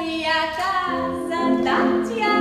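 A woman singing, with a steady held note from the accompaniment underneath her voice.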